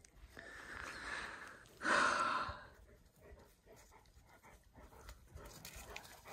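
A dog's breathy huffs close by: a soft one, then a louder, shorter one about two seconds in.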